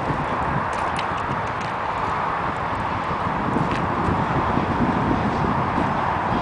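Steady wind noise rumbling on the microphone, with a couple of faint knocks from a Welsh cob's hooves shifting on gravel as the horse stands at a horsebox ramp.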